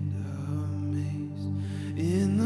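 Soft worship-band accompaniment: acoustic guitar over a steady, sustained low keyboard pad, with no voice.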